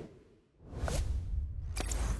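Motion-graphics sound effects: a whoosh fading away at the start, then a second whoosh swelling over a deep rumble from about half a second in. A short falling tone sounds about a second in, and a sharp click comes near the end.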